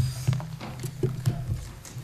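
Handling noise on a lectern microphone: a string of irregular soft knocks and rustles as papers are arranged on the lectern.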